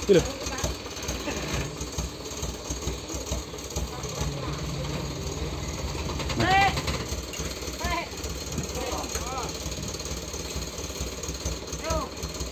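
Diesel dump truck engine idling with a steady knocking clatter. A few short calls from voices come in over it partway through.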